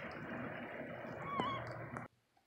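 Wind on the microphone, a steady rush, with one short wavering bird call about one and a half seconds in; the sound cuts off abruptly at the end.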